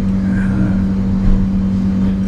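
A steady low machine hum at one pitch, over a rough rumble.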